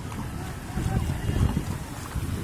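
Wind buffeting the microphone outdoors in the rain: an uneven low rumble that swells around the middle.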